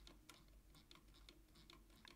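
Near silence with faint, irregular clicking from a computer mouse as the chart is zoomed out.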